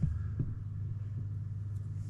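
A steady low hum with a few faint clicks and knocks as a plastic desk microphone and its pop filter are handled.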